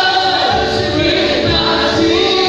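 Gospel choir and congregation singing together, several voices carrying the melody over a low beat about twice a second.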